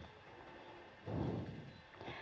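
Quiet pause with faint, even background noise and one brief soft rush of sound a little over a second in.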